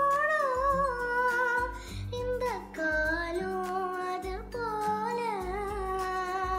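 A boy singing a slow melodic song over a recorded backing track, holding long wavering notes, with a deep bass note landing about once a second.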